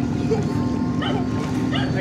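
Steady low hum of a pump boat's engine idling, with a few short yelps over it.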